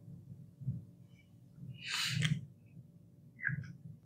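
Quiet handling noise: a few soft low thumps and a short hissy rustle about two seconds in.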